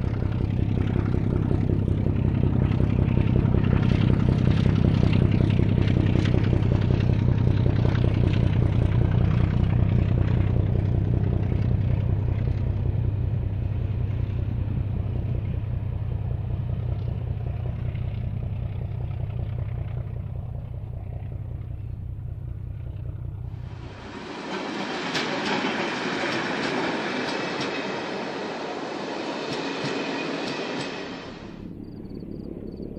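Class T 478.1 'Bardotka' diesel locomotive hauling a passenger train, its engine running with a deep, steady drone that slowly fades as the train draws away. About 24 s in, this cuts to coaches rolling close past, a rushing wheel-on-rail noise with no engine in it.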